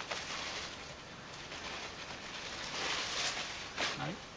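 A cat's paw patting against a framed picture: a few faint soft taps over low hiss, the sharpest tap near the end.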